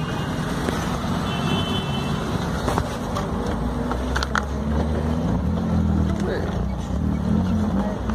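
Low, steady rumble of a car engine idling, with traffic noise, faint indistinct voices and a couple of light knocks.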